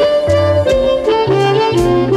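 Electric blues band recording: a reedy lead line, most likely amplified harmonica, moving note to note over walking bass notes and drums.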